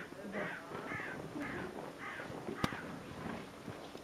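A bird giving a run of harsh caws, about one every half second, that die away after two seconds or so. A single sharp click comes about two and a half seconds in.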